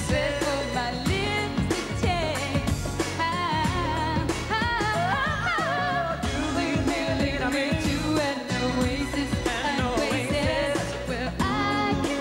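Live pop song: a woman's lead vocal with wavering, sliding runs over a full band with drums, cymbals and bass.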